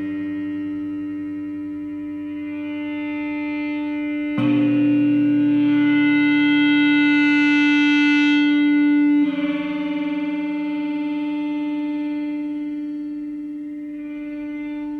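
Electric guitar sustained by an EBow, prepared with a 3D-printed arched ring that couples the 3rd and 5th strings, giving a held, gong-like tone whose added mass makes the strings inharmonic. About four seconds in, the tone jumps abruptly louder and brighter with a lower note beneath it. About five seconds later it falls back to the quieter sound.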